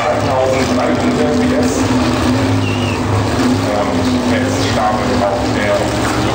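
Pro Stock drag cars' V8 engines running at the start line, a steady low drone, with a public-address announcer's voice coming over the track loudspeakers.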